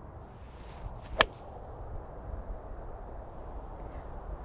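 An iron golf club swishes through the downswing and strikes the ball with a single sharp click about a second in. It is a clean, well-compressed strike that the golfer says felt great on the club face, with only a shallow divot taken.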